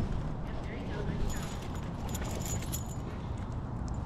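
Faint metallic jingling of a dog's collar tags and harness hardware for a couple of seconds mid-way, over a steady low outdoor rumble.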